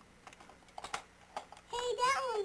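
Small toy trains clicking and clacking against each other and a plastic compartment case as a hand sorts through it, a few light separate clicks. Near the end a child's high voice starts.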